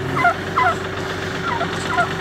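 White domestic turkey calling: a series of about six short, high, sliding calls spread over two seconds, with a steady engine hum underneath.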